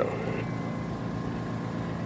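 A steady background engine hum with a few faint steady tones, with no distinct knocks or clicks.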